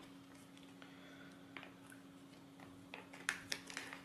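Faint crinkling and small clicks of a small plastic zip bag of bolts and nuts being handled, the clicks coming thicker in the last second, over a faint steady low hum.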